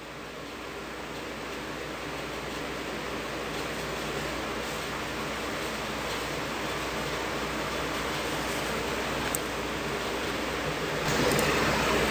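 Steady hiss of background noise, slowly growing louder, with a step up in level near the end.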